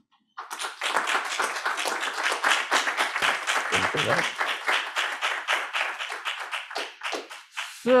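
Audience applauding: a dense, even spatter of hand claps that starts about half a second in and thins out and stops near the end.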